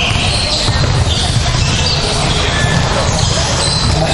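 Loud, steady hall noise: a deep rumble with indistinct voices and short high whines scattered through it.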